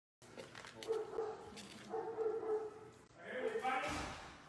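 Young chimpanzee calling in a few drawn-out hoots. The last call, near the end, is higher and louder.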